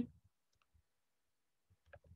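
Near silence with a few faint, short clicks, one about half a second in and more near the end.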